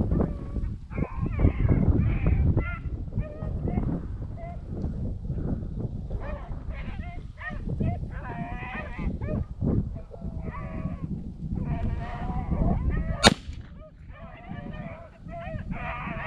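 Beagles baying on a rabbit's trail: a run of separate bawling calls from several hounds. About 13 seconds in, a single sharp gunshot crack cuts through the baying.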